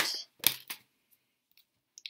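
A few short snaps and clicks of tarot cards being handled and drawn from the deck, the loudest about half a second in, then near silence with a faint tick or two.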